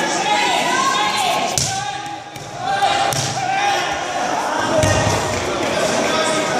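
A body landing on the mats with a dull thud as a competitor is thrown, the heavier landing near the end after a lighter thud about one and a half seconds in. Voices carry on underneath.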